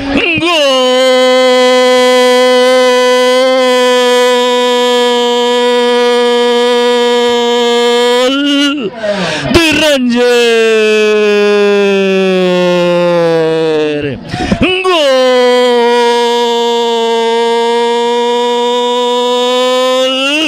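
A Spanish-language football commentator's long drawn-out goal cry, "gooool", held on one pitch for about eight seconds. After a short break it comes twice more: once sliding down in pitch, then held steady again near the end.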